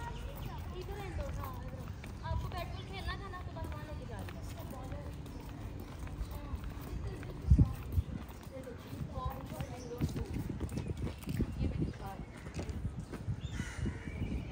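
Indistinct background talk over a low rumble. Two sharp thumps come about halfway through, then a quick run of dull thuds.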